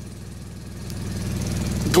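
Mercedes-Benz Vario 814D's diesel engine idling with a steady low rumble, heard from inside the coach's passenger cabin and growing gradually louder.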